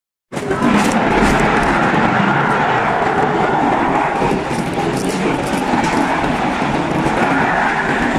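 Escalator running: a steady, dense rumbling drone that starts just after the opening moment.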